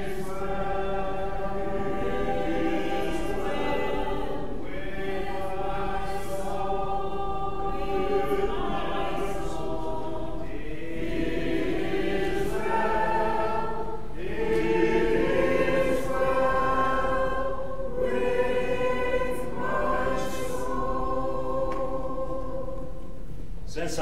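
Voices singing together in slow, sustained chords that change every second or two, in phrases with short breaks between them.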